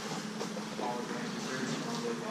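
Brief indistinct voices of people in the room over a steady low hum of room noise.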